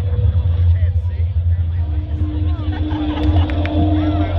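Live concert sound through a large PA: a deep, steady bass drone with a held synth note that drops to a lower note about halfway, under the chatter of an outdoor crowd.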